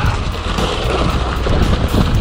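Background music with a steady bass line, over wind rush and tyre noise from a bicycle rolling on a gravel road.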